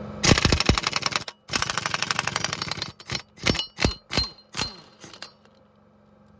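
Impact wrench hammering out the central bolt of an engine belt pulley on a Škoda Octavia: two long bursts of rapid hammering, then several short blips as the loosened bolt is run out, most ending in a falling whine as the tool spins down.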